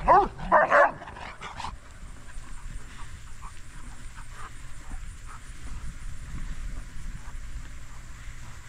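A dog barking and yipping in quick short calls, two loud ones in the first second and fainter yips just after, during rough play with another dog; then only a low steady background noise.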